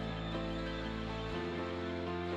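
Soft background music of held chords that change twice.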